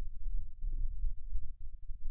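Low, uneven rumbling thumps with nothing above the bass, picked up by the microphone.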